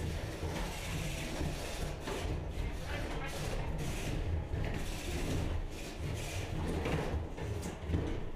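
Two 3 lb combat robots jammed together, rattling and scraping as they strain against each other, over a low steady rumble.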